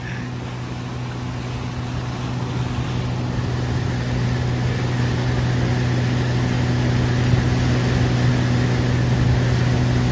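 Outboard motor running steadily with the boat under way at speed, a low even hum over the rush of water from the hull and wake. It grows gradually louder.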